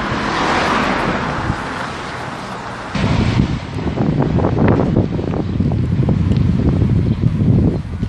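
Wind buffeting a phone microphone outdoors: a loud, ragged low rumble that sets in suddenly about three seconds in. Before it, a broad hiss swells and fades.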